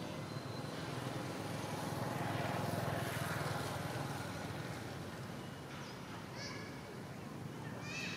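Steady outdoor background rumble that swells and fades about a third of the way in, with a few short, high chirping calls near the end.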